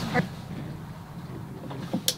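A low, steady background hum. A short fragment of voice comes just after the start.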